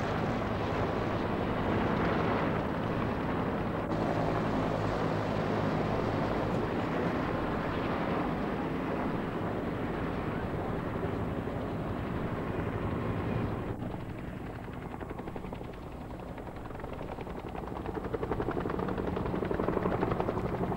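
Several Bell UH-1 Huey helicopters running close by, a steady churn of rotors and turbines. It eases a little past halfway and builds again near the end as a helicopter comes down close in a cloud of dust.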